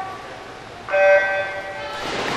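Electronic starting signal for a swimming race: one steady tone about a second long, starting suddenly about a second in.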